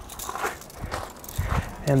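Footsteps crunching on gravel: several uneven steps.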